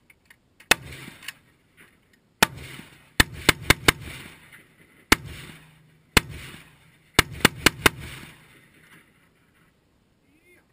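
Semi-automatic AR-15-style rifle fire: about a dozen sharp shots, some single and two quick strings of four, each trailing off in an echo.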